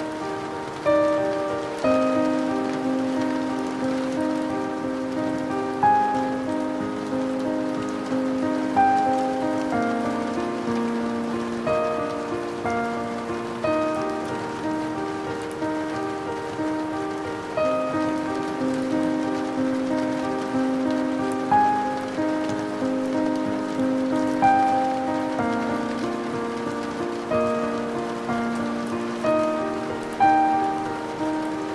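Steady rain falling, laid under slow classical music of sustained notes and chords with a new note struck every second or two.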